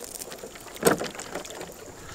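Rustling handling noise from a handheld camera carried along on foot, with one sharp knock a little under a second in.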